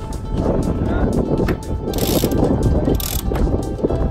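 Sheet winch on a small sailing yacht ratcheting with a run of clicks, with two short hissing rushes about two and three seconds in. Wind rumbles on the microphone throughout.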